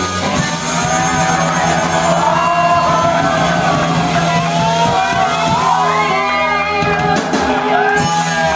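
Punk rock band playing live through a PA, the vocalist shouting and singing into the microphone over held guitar and bass tones.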